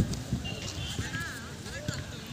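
Boys' voices calling out, with thuds of running footsteps on bare dirt during kho kho play.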